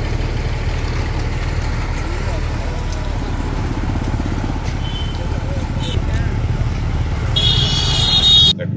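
Road traffic with a motorcycle engine running close by, over a steady low rumble. Faint voices are mixed in, and a brief high-pitched sound comes near the end.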